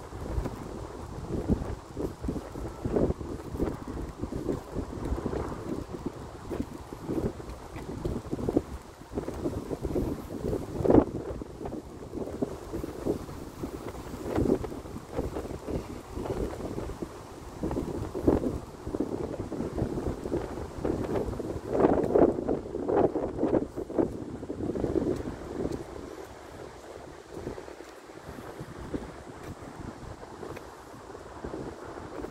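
Wind gusting across the microphone, rising and falling unevenly, and easing off near the end.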